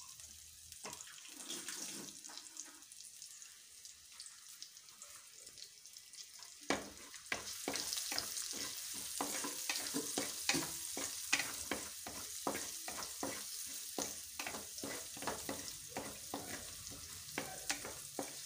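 Chopped onion, green chillies and curry leaves sizzling in hot oil in a clay pot. From about seven seconds in, a spoon stirs them, scraping and tapping against the pot in a quick run of clicks over the sizzle.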